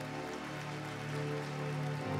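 Electronic keyboard playing sustained, held chords, quieter than the speech around it, with the notes shifting to a new chord partway through.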